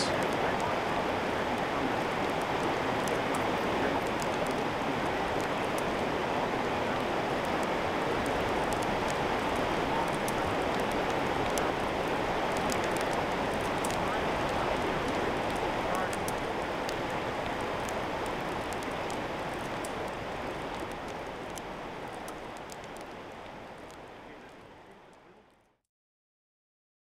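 Wood campfire crackling with frequent sharp pops over a steady hiss of burning, fading out over the last few seconds.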